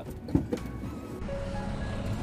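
A single sharp knock as the car door is unlatched and opened, then quiet background music with a few sparse held notes starts about a second in.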